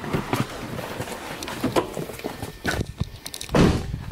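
Car door opening, with knocks and rustling as someone climbs out of the driver's seat; the loudest knock comes near the end.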